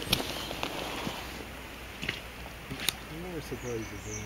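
Quiet outdoor background noise with a steady low hum. There are two short, sharp clicks about two and three seconds in, and a faint voice speaks briefly near the end.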